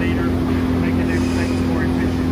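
Steady drone of running shop machinery, with an unbroken low hum.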